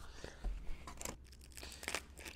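Plastic packaging being handled and torn open, with irregular rustling and a few sharp crackles.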